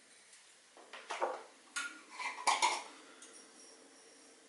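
Kitchenware being handled: a handful of short, light clinks and knocks, bunched between about one and three seconds in.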